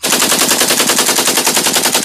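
Rapid automatic gunfire, as a sound effect: a loud, even burst of about fourteen shots a second.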